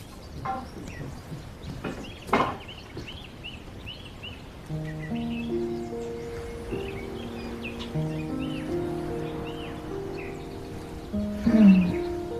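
Small birds chirping repeatedly as background ambience, joined about five seconds in by soft background music of long held notes. There are two short knocks in the first few seconds, and a brief voiced sound near the end.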